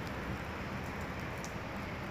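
Steady outdoor background noise, an even hiss with a low rumble underneath, with a couple of faint clicks.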